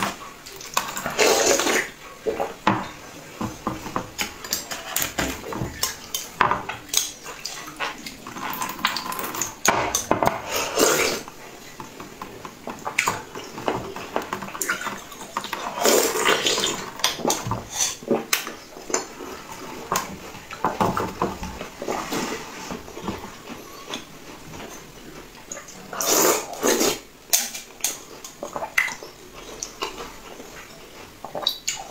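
Close-up eating sounds of a purple frozen slush: a metal spoon scraping and clinking against a tall glass, with wet slurping and squelching as the icy jelly is sucked off the spoon, in irregular bursts.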